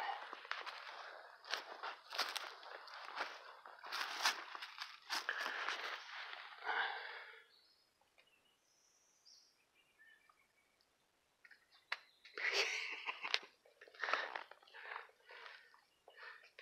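Footsteps crunching through dry leaf litter on the forest floor. The steps stop about halfway through for a few seconds, then start again near the end.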